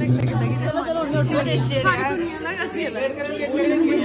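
Speech: several women chatting and talking over one another.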